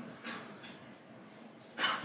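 A pause in a man's speech into a microphone: faint room tone, then a short intake of breath near the end, just before he speaks again.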